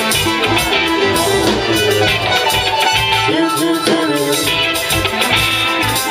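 A live band playing loud music, with guitar and drums.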